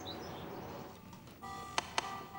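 Quiet room tone, then about a second and a half in soft background music enters with held notes and sharp tapping clicks.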